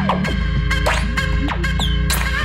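Electronic dance music mixed live by DJs on CDJ decks and a mixer: sustained synth chords over a steady low beat, with quick sliding synth notes, falling around the start and near the middle and rising near the end.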